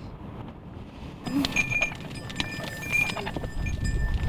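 A herd of reindeer crowded together, starting about a second in: a steady rustle with many small clicks, a single low grunt, and a few thin, high ringing tones.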